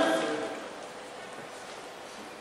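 A man's voice trails off in the first half second, leaving a pause filled only by a steady faint hiss of room and microphone noise.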